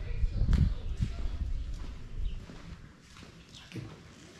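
Footsteps on a concrete floor with low thudding rumble, loudest in the first two seconds, including a sharp knock about half a second in; it dies down toward the end.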